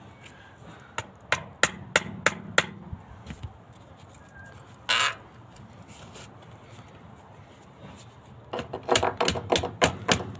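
Hammer blows on a screwdriver wedged into a glued PVC downpipe joint to knock the fitting off: a run of six sharp taps, about three a second, a short scrape about halfway through, then a quick flurry of blows near the end.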